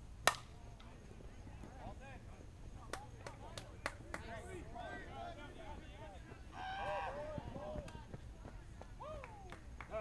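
Softball bat hitting the ball with one sharp crack about a third of a second in, followed by players calling out and shouting, loudest around seven seconds in.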